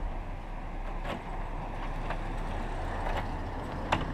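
Steady rumble of a motor vehicle in the street, swelling slightly toward the end, with a few small clicks of keys working a door lock.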